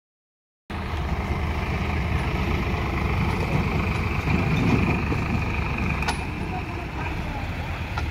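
Heavy diesel vehicle engine running with a steady low rumble, a little louder around the middle, with a single sharp click about six seconds in.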